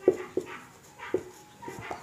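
Felt-tip marker squeaking on a whiteboard, about three short pitched squeaks in the first second and a thinner squeal near the end, one for each pen stroke.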